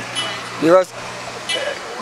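Road traffic behind a street interview: a vehicle's steady engine hum that stops shortly before the end, with one short vocal sound about two thirds of a second in.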